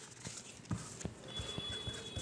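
Pen writing on paper laid on a hard surface: a series of light, irregular taps from the pen strokes, starting just under a second in.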